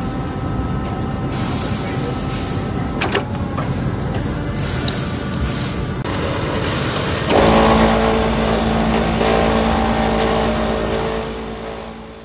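Boot-factory machinery running: a lasting machine with a single clunk about three seconds in. Then a bench machine with spinning metal discs starts a louder, steady motor hum, working a boot's leather flange, and fades out near the end.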